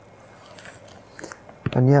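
Quiet rustling and a few soft clicks as a man leans over and picks up a book, his clothing brushing a clip-on microphone; near the end he says "And yeah."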